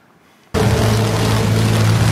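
Near silence for about half a second, then outdoor sound cuts in suddenly: a loud, steady low hum over a dense hiss of rain.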